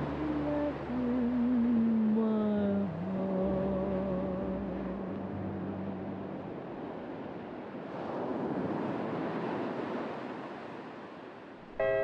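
The last long, wavering and sliding notes of a Hawaiian steel-guitar tune fade out over a steady wash of distant ocean waves. The waves go on alone for a few seconds, then a new guitar tune starts just before the end.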